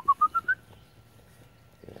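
A quick run of about six short whistled notes stepping up in pitch, all within the first half second, then only a quiet background.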